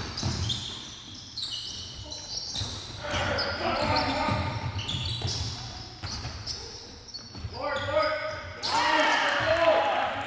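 Basketball dribbled and bouncing on a gym's hardwood floor during play, with players' voices calling out loudest near the end.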